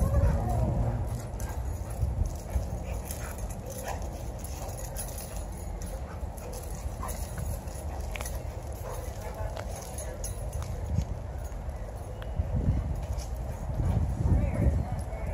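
Two dogs playing rough on asphalt, with scattered clicks and scuffs of paws and claws over a steady low rumble.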